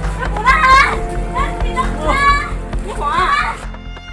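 High-pitched shouting voices in four or five short outbursts during a scuffle, over low background music. The voices cut off just before the end as steady music notes take over.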